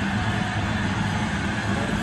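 Steady crowd noise from a televised ballpark broadcast, played through a TV speaker in a room.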